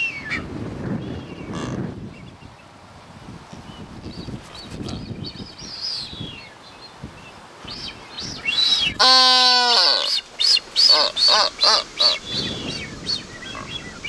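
Blue-footed boobies calling: scattered high calls, then one louder, drawn-out call about nine seconds in, followed by a quick run of short high calls.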